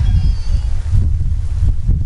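Loud, gusting wind buffeting the microphone in a heavy rainstorm, a dense low rumble, with a faint voice briefly near the start.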